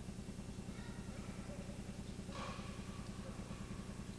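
A steady low electrical hum with a fast, even buzz in it, from the old recording's audio track. A faint, short rush of noise comes about two and a half seconds in.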